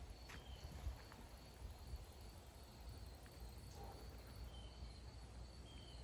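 Quiet outdoor ambience: a faint steady insect chirr over a low rumble of air on the microphone, with two short high chirps in the second half.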